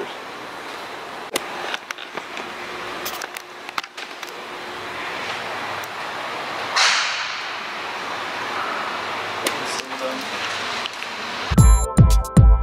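Steady hiss of shop room noise and camera handling, with scattered clicks and knocks and a swelling whoosh about seven seconds in. Just before the end, electronic music with a heavy beat starts.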